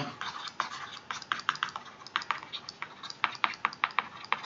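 Stylus tip tapping and scratching on a tablet screen during handwriting: an irregular run of small, sharp clicks, several a second.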